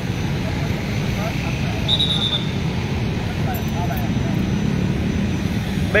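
Steady rumble of motorcycle and car traffic on a busy street, with faint voices in the background. About two seconds in, a brief high trilled tone sounds.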